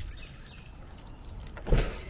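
A car door being opened: the handle is pulled and the latch releases with a single loud clunk near the end, after soft footsteps on concrete.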